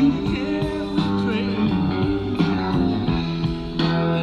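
Live rock band playing an instrumental passage, heard on an audience recording: an electric guitar lead with bending, gliding notes over steady bass and drums.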